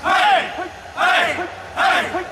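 A group of men shouting short calls together in rhythm, three calls in two seconds, as they keep time through a stretching drill.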